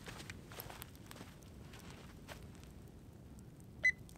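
Faint footsteps on dry, sandy dirt, a few soft scuffs spread over the first few seconds. Just before the end comes a single short, high beep from the handheld infrared thermometer gun being triggered.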